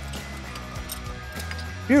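A few light clicks of a deep-well socket and extension turning a spark plug out of the cylinder head, over background music.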